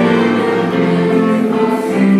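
A small group of women singing into microphones over a PA, with keyboard accompaniment; the notes are long and held.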